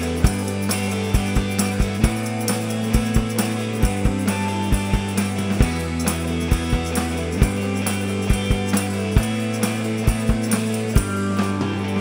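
Psychedelic rock band playing an instrumental passage with no vocals: a drum kit beat over steady, held bass notes, with electric guitar and a shaken tambourine.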